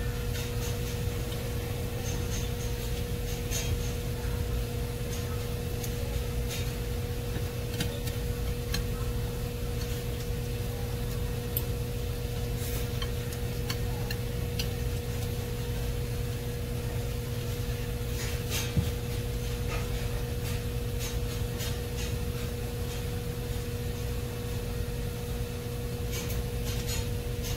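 Irregular small clicks and scrapes of chopsticks on a ceramic plate as a man eats noodles, over a steady low electrical hum.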